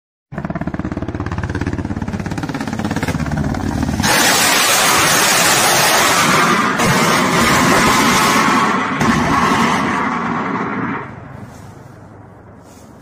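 Low-flying military helicopter: rapid rotor beat over a steady engine drone. About four seconds in it turns to a much louder, harsh rushing noise that drops away sharply near the end.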